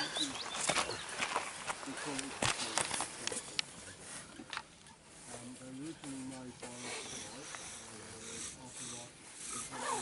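Wooden bow-drill spindle turning back and forth in the hearth board's socket as the bow is sawed, wood rubbing on wood while the socket is burned in. There are scattered knocks in the first few seconds, and a faint wavering squeal near the middle.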